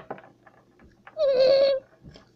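A child's voice holding one high, slightly wavering note for about half a second, starting just after a second in.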